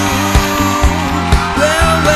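A dance band playing an up-tempo song: a steady drum beat at about two hits a second, a bass line and a melody line on top.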